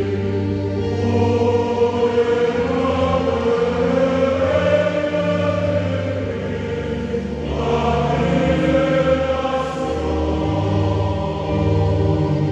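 A church choir singing in long, held chords, with a new phrase beginning about seven and a half seconds in.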